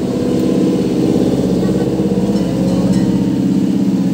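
An engine idling steadily, a low even hum that runs on without change.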